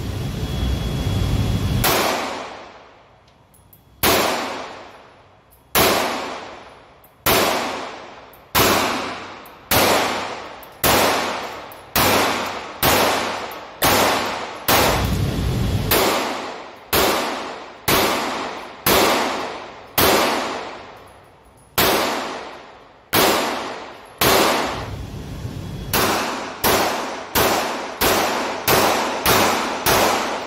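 Springfield Armory Hellcat 9mm micro-compact pistol firing shot after shot in an indoor range, each shot followed by a long echo. The shots come about one every second or so, then quicken to about two a second near the end.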